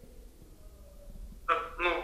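Quiet room tone, then about a second and a half in a voice starts speaking.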